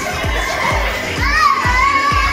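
Pop dance music with a steady kick-drum beat, a little over two beats a second, under the noise of children playing and calling out; about a second in, a child's high voice rises over it and is held for most of a second.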